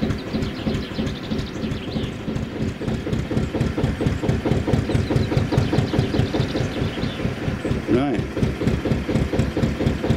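Narrowboat's diesel engine idling at tickover once warmed up: a steady, rapid, even chugging. A short rising-and-falling squeak sounds about eight seconds in.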